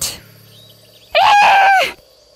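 A cartoon dinosaur character's voice gives one short, high-pitched cry a little over a second in, held level and then falling away.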